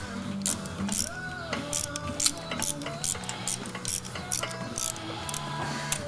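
Irregular sharp clicks, roughly two a second, from a hand tool working in a Hemi engine block's coolant passages while clogged caulk-like coolant deposits are being cleared out.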